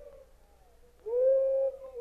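A person's voice holding one drawn-out note of praise about a second in, rising at the start and then steady for under a second.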